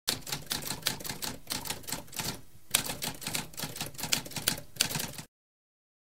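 Typewriter typing: a quick run of rapid keystroke clicks with a brief pause about halfway, stopping abruptly about five seconds in.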